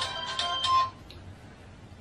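Phone ringtone: a short electronic melody of high, clean notes that stops about a second in.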